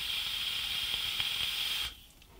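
Long draw on a vape: air hissing through the Hellixer rebuildable tank atomiser as its coil fires, a steady hiss that cuts off just before the end.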